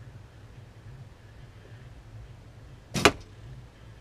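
A Win&Win recurve bow being shot: one sharp, short crack about three seconds in as the string is loosed and the arrow flies to the target.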